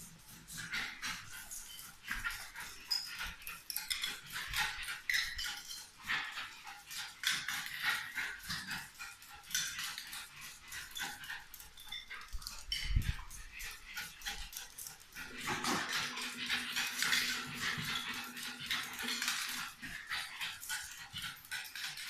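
A Parson Russell terrier frantically chasing disco-light spots on a tiled floor: a dense, rapid, irregular clatter of claws clicking and skittering on the tiles, with a few sharp yaps or snorts mixed in. A faint steady low tone sounds for a few seconds in the later part.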